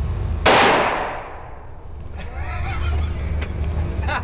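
A single shot from a Smith & Wesson .50-calibre revolver (the .500 S&W Magnum Model 500), about half a second in: one sharp crack whose echo in the indoor range dies away over about a second.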